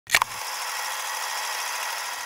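Old-film sound effect: two sharp clicks at the very start, then a steady hiss.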